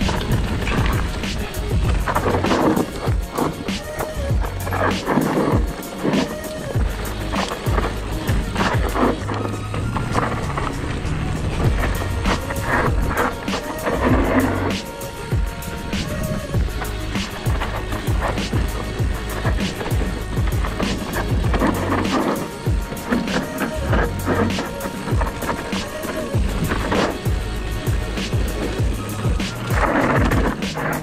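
Music with a steady beat over the tyre rolling and rattle of a mountain bike riding down a rocky dirt trail, with frequent short clatters as it hits bumps.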